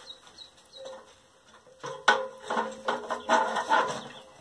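A metal ladder knocking and ringing under a climber's weight: quiet at first, then a sharp knock about two seconds in, followed by ringing tones and squeaks.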